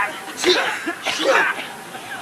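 Wordless human vocal sounds: two short, breathy outbursts of voice, about half a second and a second and a quarter in.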